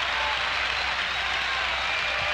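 Large audience applauding, the clapping steady and even throughout.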